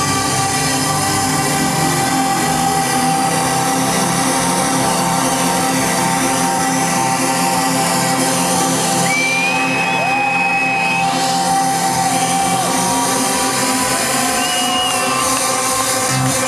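Loud electronic dance music played by a DJ through a parade truck's sound system, in a breakdown with the bass and kick drum dropped out, held synth tones and a couple of pitch glides near the middle.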